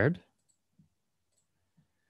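A spoken word trails off, then a few faint, sparse clicks from a computer mouse as screen sharing is started.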